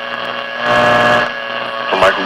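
Static hiss from a 1950s Zenith Trans-Oceanic tube radio's speaker while it is tuned between stations, with steady hum tones running under the noise.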